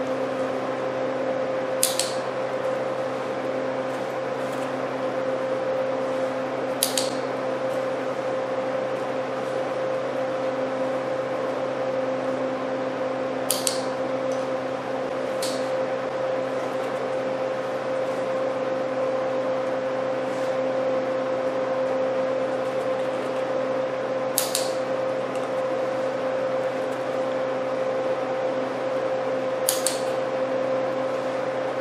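Sharp clicks of a dog-training clicker, six in all at uneven gaps of a few seconds, over a steady low hum. The clicks mark the dog's touches on a target stick.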